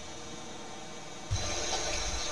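Steady faint background hiss of room tone with no distinct events. A little over a second in it switches abruptly to a louder background with a low hum and brighter hiss.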